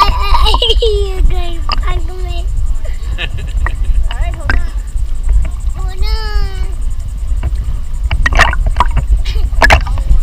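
A toddler's wordless voice, short babbling sounds early on and one longer rising-and-falling squeal about six seconds in, over a constant low rumble of sloshing water and wind on the microphone. A few short sharp sounds, like splashes, come near the end.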